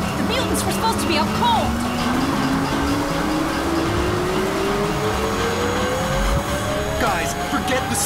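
Cartoon car-chase sound effects: a car engine whose pitch climbs slowly and steadily as it speeds up, mixed with music and short wordless vocal cries.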